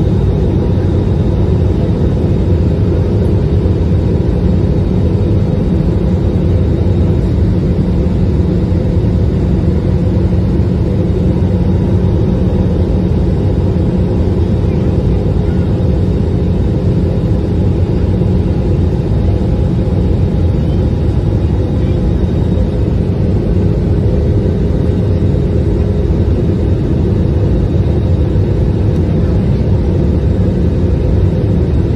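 Steady, loud roar of a jet airliner in flight, heard inside the cabin from a seat over the wing: engine and airflow noise, deep and unchanging, with a faint thin whine above it.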